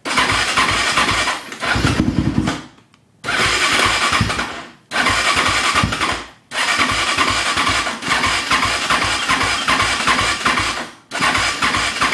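Electric starter cranking a 2007 450 quad's single-cylinder engine in about six separate attempts, the longest about four seconds, with short pauses between; the engine is hard to start and does not settle into an idle.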